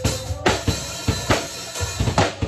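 A live acoustic drum kit played in a gospel band: a steady beat of bass drum and snare hits, about two strong hits a second, under ringing cymbals. Keyboard and bass sound steadily beneath the drums.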